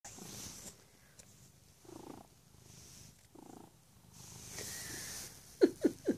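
Domestic cat purring softly in slow, repeating cycles, with a quick run of three short, loud sounds near the end.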